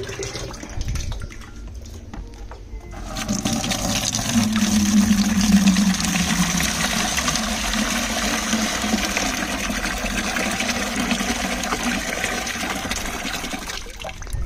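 Compost extract poured from a plastic jug through a stainless mesh sieve into a plastic bucket: a steady splashing pour that starts about three seconds in, after quieter handling as the jug is filled from the drum.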